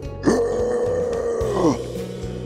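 A person's voice calling out one long drawn-out 'oh', rising quickly, held for more than a second, then gliding down, in a concrete underpass.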